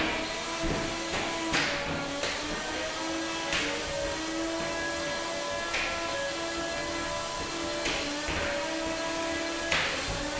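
Spinning drum weapons of two 3lb combat robots whining steadily at a held pitch, deafening inside the enclosed arena box, with sharp metal impacts about every two seconds as the robots hit each other.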